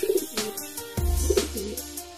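Domestic pigeon cooing briefly, with background music with a beat.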